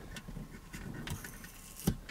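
Plastic car phone holder being taken off its suction-cup ball-head mount by hand: faint handling rustle and small ticks, with one sharp plastic click just before the end.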